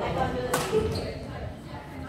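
A badminton racket smashing a shuttlecock: one sharp crack about half a second in, echoing in a large gym hall.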